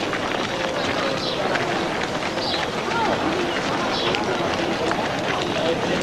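A crowd of people on the move: many footsteps over a steady murmur of overlapping voices.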